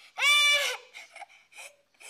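A young girl's high-pitched whining cry: one drawn-out wail in the first second, its pitch dropping as it ends, then only faint traces.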